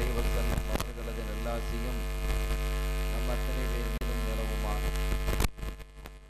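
Loud electrical mains hum with a buzz of many steady overtones on the microphone's audio line, cutting off suddenly about five and a half seconds in.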